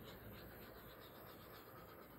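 Near silence with faint rustling, as a gloved hand moves over the work surface.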